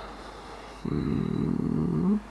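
A man's low, close-miked hum ('hmm'), starting suddenly a little under a second in and lasting just over a second, rising slightly at the end.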